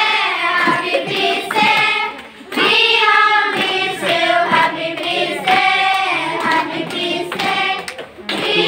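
A group of voices, children among them, singing a festive song together, with a short break between phrases about two and a half seconds in.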